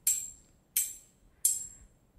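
A metal object striking another metal object three times, about two-thirds of a second apart, each strike a sharp, high clang that rings and fades.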